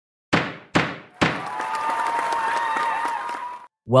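Produced intro sound effect: three hard hits about half a second apart, then a sustained ringing tone with a crackle running through it that cuts off just before the narration starts.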